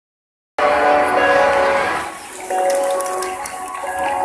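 Music starting about half a second in with long held chord tones, easing off briefly just past the middle and coming back.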